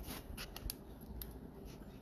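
A few faint, short clicks over a low background hum.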